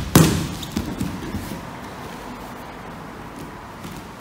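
Grapplers in gis landing on foam floor mats: a loud thud at the start as one drops to sit for a guard pull, then a few lighter thumps and scuffs of bodies and feet on the mat.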